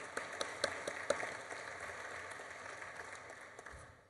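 Audience applauding, the clapping thinning and fading away until it stops just before the end.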